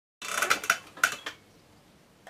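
A quick run of about five clinks and clatters of small hard objects, with a slight ring, over the first second or so.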